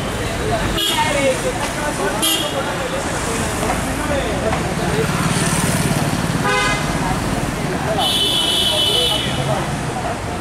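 A crowd of voices chattering over street traffic, with car horns honking several times: short toots about a second and two seconds in, another past six seconds, and a longer honk near the end. A car passes midway.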